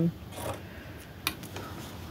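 Sewing scissors snipping off long thread tails at a seam: two short, crisp snips, the first about half a second in and the second just past a second.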